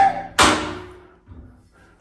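A single sharp knock about half a second in, ringing away over most of a second in a small tiled bathroom, just after a brief click.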